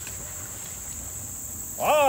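Insects, crickets or similar, chirring in a steady, unbroken high-pitched drone; a man's voice starts speaking near the end.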